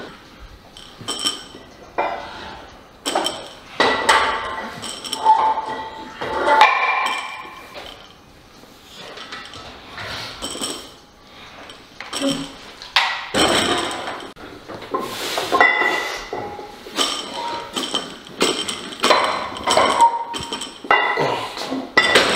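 Steel barbell and weight plates in a power rack: repeated metal knocks and clinks, some leaving a short metallic ring, as plates are slid onto the bar and the bar is handled in the rack.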